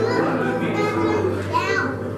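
Many overlapping voices of a worship service calling out in praise, over a steady, sustained low keyboard note. One voice rises in a cry near the end.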